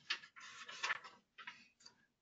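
Soft paper rustling from the pages of a paperback picture book being handled and turned, in several short scratchy bursts.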